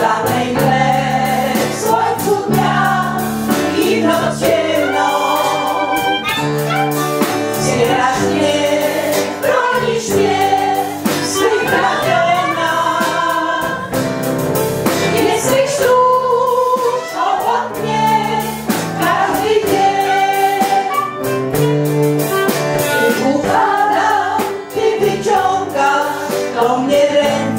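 An amateur senior choir, mostly women with a few men, singing together into handheld microphones over a steady accompaniment with a bass line moving in held notes.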